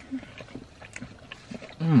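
Close-up chewing and mouth sounds while eating a fried chicken sandwich: a run of small soft clicks and smacks, then an appreciative hummed "mmm" near the end.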